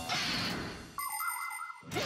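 Cartoon sound effects: a noisy whoosh that fades away over the first second, then a short warbling electronic tone with a high ringing shimmer, and a rising swoop near the end.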